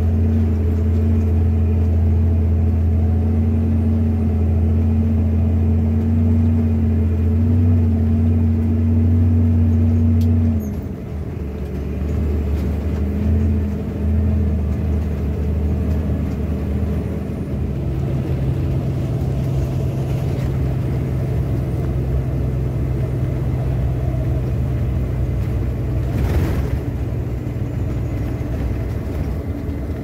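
Scania truck's diesel engine droning steadily, heard from inside the cab while driving. About ten seconds in the drone drops and quietens, then after a few seconds settles into a different steady note.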